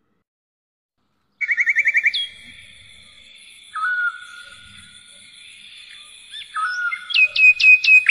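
Bird-like chirping and whistling that starts abruptly after about a second and a half of silence: a fast trill, then long held whistled notes under short chirps, with a run of quick sharp chirps near the end.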